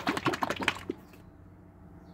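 Plastic squeeze bottle of Floetrol and acrylic paint being shaken hard by hand to mix it: a rapid, even run of knocks that stops about a second in.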